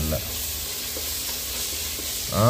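Sliced onions frying in hot oil in an open pressure cooker, with a steady sizzle, while a wooden spatula stirs them.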